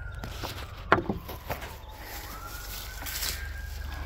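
A faint siren wailing, its pitch sliding slowly down and then climbing again a little after two seconds in. A sharp knock sounds about a second in, with a few lighter clicks.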